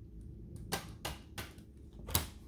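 Tarot cards being handled over a tabletop: three light clicks of card stock in quick succession about a second in.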